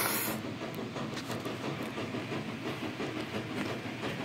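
Soft rustling and light scraping of old paper booklets being handled and shifted on a cloth-covered table, an even hiss with faint irregular ticks.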